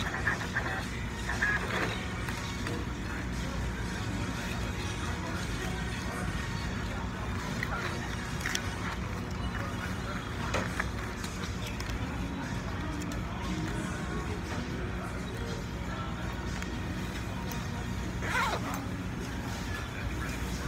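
Restaurant background sound: music playing over a steady low hum, with faint voices from other people in the room.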